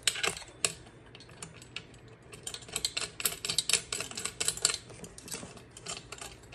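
Small metallic clicks and ticks from bolts and washers being threaded by hand into a steel foot-rest bracket, a few near the start and a quick run in the middle.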